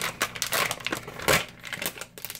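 A clear plastic deli bag of sliced provolone crinkling as it is handled, with a run of irregular crackles, the loudest about a second and a half in.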